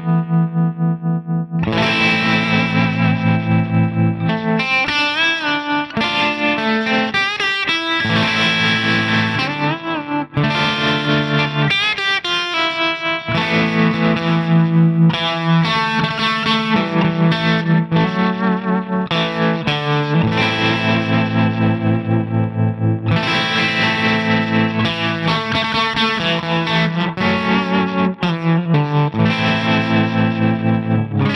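Electric guitar, a Suhr Custom Classic, played through a Ceriatone Prince Tut, a Princeton Reverb–style amp, with its tremolo on. The volume pulses evenly several times a second as chords and single-note lines with string bends are played through a 2x12 open-back cabinet.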